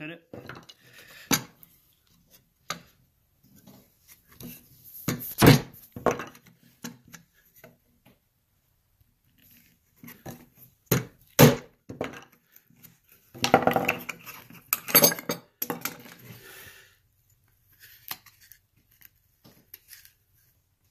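Bench chisel chopping and paring a shallow mortise in pine: a few sharp knocks spaced seconds apart, two close together about eleven seconds in, with a run of busier clattering and scraping of the chisel and waste a little later.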